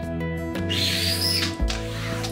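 Background music with sustained chords and a low beat. In the middle, a short swishing squeak of a rubber squeegee wiping across wet mirror glass.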